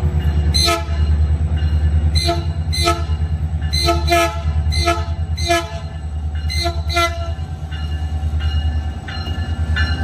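Metrolink MP36 diesel locomotive sounding its horn in a rapid series of short taps, many in quick pairs, over the steady low rumble of its diesel engine as it approaches and passes.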